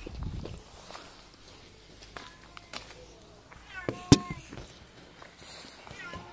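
A domestic cat meowing a few times, short high calls that rise and fall, the clearest a little after the middle. A sharp click about four seconds in is the loudest sound, and a low thump comes at the start.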